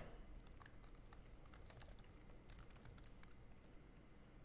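Faint typing on a mechanical computer keyboard: scattered quick key clicks.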